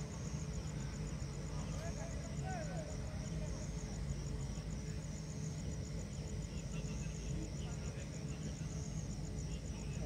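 Night-time outdoor ambience: a high insect trill, likely crickets, pulsing evenly throughout, over a steady low hum and faint distant voices.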